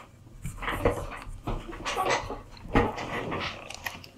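Rustling and several sharp knocks from headphones being handled and put on close to the microphone, the loudest knocks about a second in and near three seconds.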